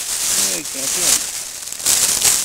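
Plastic bag crinkling and rustling as it is handled right against the microphone, a loud, crackly hiss throughout, with a short bit of voice about half a second in.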